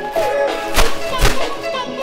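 Background music, with two dull thuds less than half a second apart about a second in, as a plastic oven bag is shaken open and lowered into a cast iron Dutch oven.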